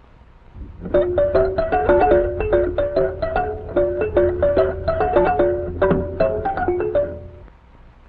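Mattel Jack-in-the-Music-Box's crank-driven music mechanism playing a quick tune of single notes while it is tested. The tune starts about half a second in and stops shortly before the end.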